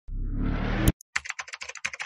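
Logo-animation sound effects: a swelling whoosh that ends in a sharp hit just before a second in, then a fast run of keyboard typing clicks, about a dozen a second, as the tagline types onto the screen.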